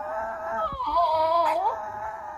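A French bulldog crying out in one long wavering howl that steps up in pitch partway through and trails off near the end, a protest at being taken away from the park.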